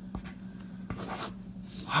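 Pencil writing on paper: short scratching strokes, loudest about a second in and again near the end.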